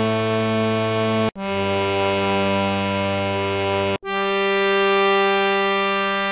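Harmonium playing single long held notes of the descending scale (avaroha) of Raag Bhoopali with G as Sa: Re, then Sa from just over a second in, then upper Sa from about four seconds in. Each note is separated by a very short break.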